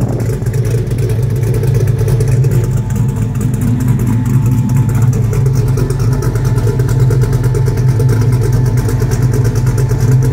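LS-swapped 1979 Pontiac Trans Am's 6.0-litre LY6 V8 idling steadily, heard through its exhaust from behind the car.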